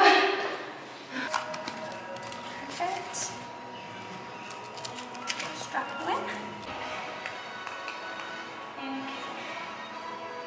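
Background music with faint voices, a steady tone running through it and a few light clicks.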